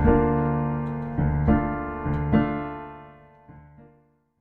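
Outro music on piano: a few struck chords that then ring out and fade away to silence near the end.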